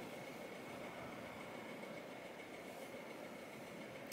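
Quiet room tone: a faint, steady background hiss with a thin, high, steady whine under it.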